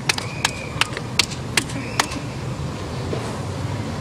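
A run of sharp, evenly spaced clicks, about two and a half a second, that stops about two seconds in, over a steady low room hum.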